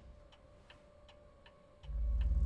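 Pendulum wall clock ticking faintly and evenly, nearly three ticks a second, over a faint steady hum. A deep low rumble swells in near the end.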